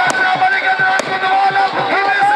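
Two sharp firecracker bangs, about a second apart, over loud music with a long held melody line.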